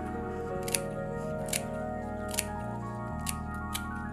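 Scissors snipping fresh guava leaves into a clay pot, about five crisp snips roughly a second apart, over steady background music.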